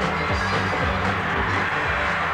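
Rockabilly band playing live, with drums and guitar keeping a steady beat over a bass line.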